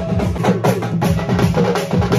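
Live band of strapped barrel drums and hand cymbals playing a fast, dense rhythm, with a melody of short sliding notes above the drumming.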